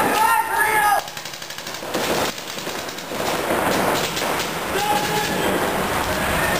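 Paintball markers firing in rapid strings of shots, a dense fast clatter of pops. A loud shout comes in the first second, with a shorter call about five seconds in.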